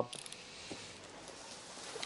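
Faint room tone: a quiet even hiss with one soft tick about two-thirds of a second in.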